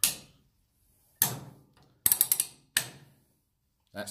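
Trailer hitch lock being pushed onto a coupling head: sharp metal clicks, one at the start and another about a second in, then a quick run of ratchet clicks around two seconds in and a last click just after.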